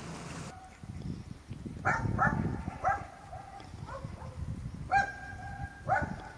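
A dog barking repeatedly, about seven barks from two seconds in, one near the end drawn out longer. Wind noise on the microphone in the first half second.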